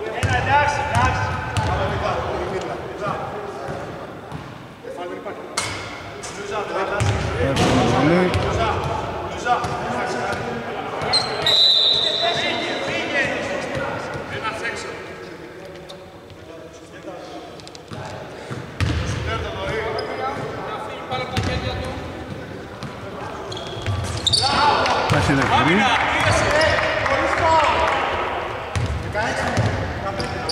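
Basketball being bounced on a hardwood court in a large, echoing hall, with players' voices calling out and squeaks and knocks of play. A short steady whistle blast sounds about eleven seconds in.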